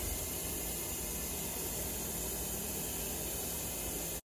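Steady, even hiss with a faint low rumble beneath it and no distinct sounds: background noise.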